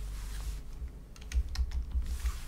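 Light clicks and taps of a stylus on a drawing tablet as annotations are drawn, a quick series of them from about half a second in, with a few dull thuds in the second half.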